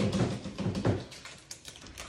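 A quick run of light knocks and taps in the first second, then a few faint clicks, from plastic tubs being handled.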